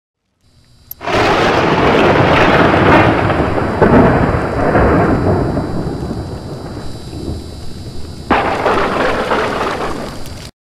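Intro sound effect of a loud rumbling crash like a thunderclap: it hits suddenly about a second in and rolls on, slowly fading, then a second crash comes near the end before it cuts off abruptly.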